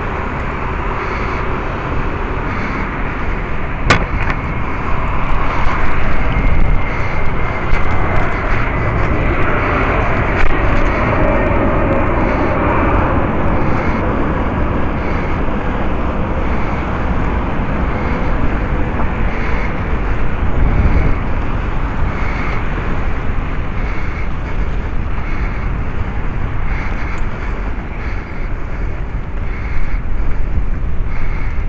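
Steady rush of wind and road noise from riding a bicycle beside city traffic, with cars going by. There is a single sharp click about four seconds in.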